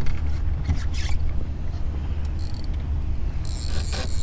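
Spinning reel being cranked, its gears and line making a light mechanical whirr as a hooked flounder is reeled to the boat, over a steady low rumble.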